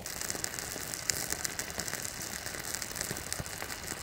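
Small pine-resin fire burning in a folded sheet-metal stove under a steel pot: a steady crackle of many tiny pops over a faint hiss.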